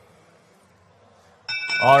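About a second and a half of low background, then a match-control signal tone starts suddenly, a steady ringing of several pitches together, marking the end of the autonomous period.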